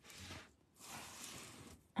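Fine-liner pen drawing on a paper art tile, two quiet scratchy strokes: a short one, then a longer one lasting about a second.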